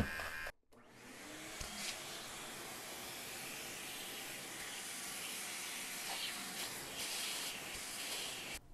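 Small vacuum running steadily through a crevice nozzle, drawing loose cut thread fluff off stitch-erased embroidery. It starts about a second in after a brief gap.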